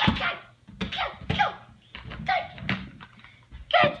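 A young boy's wordless shouts and grunts in short separate bursts as he wrestles a large inflatable ball off himself, with a thump at the start and another near the end.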